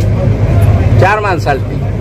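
A man's voice speaks one short phrase about a second in, over a steady loud low rumble.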